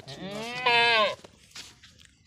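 A Beetal goat bleating once: a single wavering call about a second long that grows louder in its second half and then stops.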